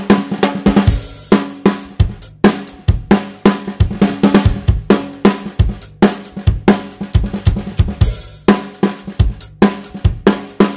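Drum kit playing a groove of snare, kick drum, hi-hat and cymbals, close-miked on the snare with a Shure SM57 dynamic microphone and left raw, with no EQ or mixing. Sharp, regular hits carry a steady low ring from the drums.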